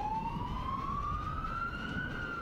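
Fire truck siren wailing: one slow rising sweep that peaks near the end, over the low rumble of the truck on the road.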